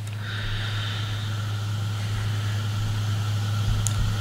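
A steady low hum with a faint hiss over it, the background noise of the recording.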